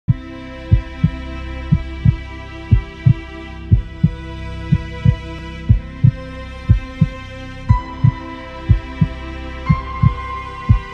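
Heartbeat sound, a lub-dub pair of low thumps about once a second, over intro music of held chords that shift every two seconds or so.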